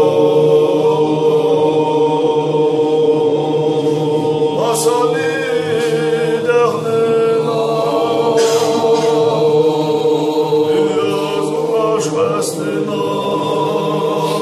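Men's voices chanting a Sufi zikr together, holding one steady note while a melody rises and falls over it a couple of times, with a few sharp hissing consonants.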